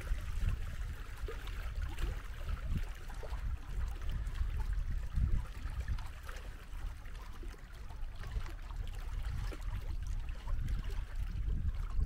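Small wind-driven waves on a lake lapping and splashing, with wind buffeting the microphone as a steady, uneven low rumble.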